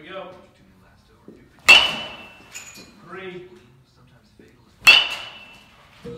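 Two hits of a baseball bat on a ball, sharp cracks about three seconds apart, each with a brief ringing tail.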